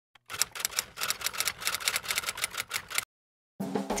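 Typewriter sound effect: a rapid run of typewriter keystrokes that stops about three seconds in.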